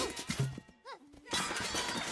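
Cartoon crash of knight-armour costumes: a sudden impact, a couple of knocks and a short lull, then a continuous clattering smash from about a second and a half in, with music underneath.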